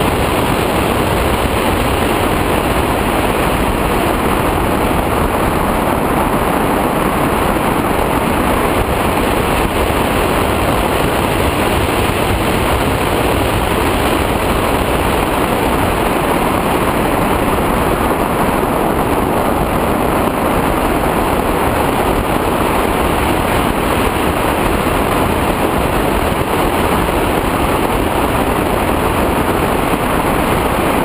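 Steady rushing airflow noise of an L-13 Blaník glider in flight, the wind pressing on a camera mounted outside the cockpit.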